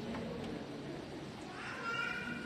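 Congregation chatter in a large room, and from about a second and a half in, a high-pitched crying voice, like a baby's cry, rising over it.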